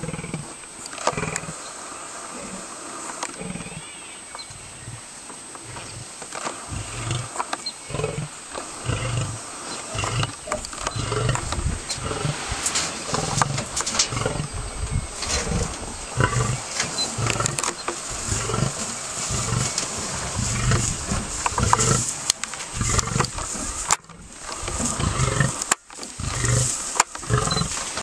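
Lions snarling at the start, then a male lion calling in a long series of deep, rhythmic grunting roars that grow louder. Handling clicks are heard near the end.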